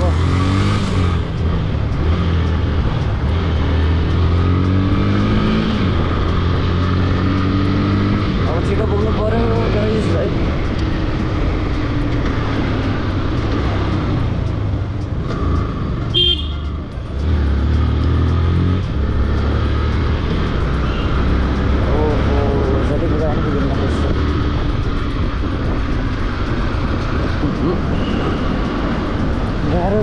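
Motorcycle engine running under the rider in traffic, its pitch climbing and dropping in steps as it accelerates and shifts gears, with a brief easing off and a short high horn beep about sixteen seconds in.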